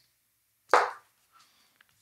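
Wire strippers snapping shut on an instrument cable to strip its insulation: one sharp snip, followed by two faint ticks.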